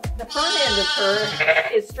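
A sheep bleating once, a long wavering call lasting about a second and a half.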